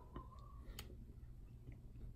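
Near silence with a few faint, sharp clicks.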